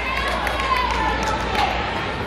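Voices in a large hall: a high-pitched voice calling out over crowd chatter, fading out near the end, with a few sharp taps.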